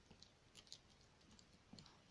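Near silence with a few faint, scattered clicks from a fidget spinner spinning on a table.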